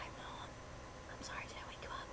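A woman whispering softly and briefly, the words indistinct.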